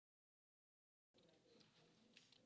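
Dead digital silence for about the first second, then the audio feed cuts in abruptly with faint room noise and distant murmured voices.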